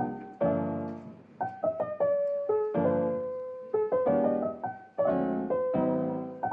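Background piano music: chords and single notes struck one after another and left to ring and fade.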